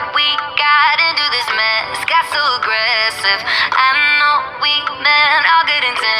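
A pop song playing: a high-pitched sung vocal over dense backing music.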